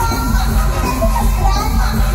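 Live mor lam stage music played loud through a concert PA: a heavy bass beat under a singer's voice.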